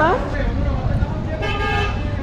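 A vehicle horn honks once, a short blast of about half a second roughly one and a half seconds in, over the low rumble of street traffic.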